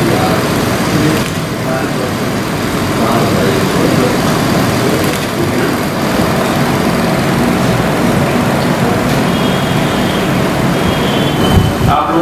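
Many people talking at once in a room, indistinct and overlapping, over a steady background noise.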